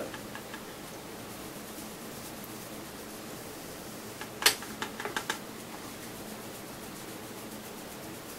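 Quiet steady room hiss, with a few light clicks and taps about halfway through as a makeup brush is worked in a powder palette.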